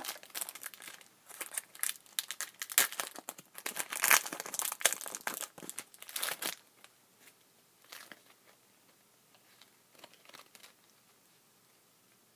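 A trading-card booster pack wrapper being torn open and crinkled, a dense crackling for about six and a half seconds, followed by a few faint ticks.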